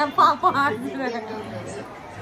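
Indistinct voices of people talking close to the microphone, with a few loud syllables just at the start and quieter murmuring after.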